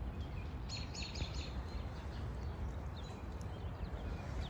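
Small birds chirping, with a quick run of four short high chirps about a second in and a few scattered ones after, over a steady low outdoor rumble.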